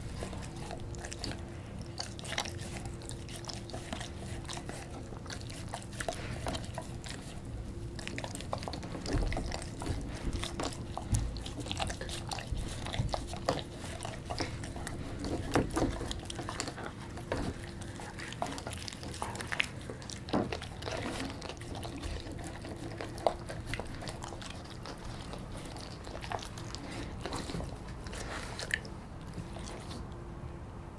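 A German Shepherd biting and chewing a slice of pizza, with irregular crunches and clicks of teeth on the crust throughout. A faint steady hum runs underneath.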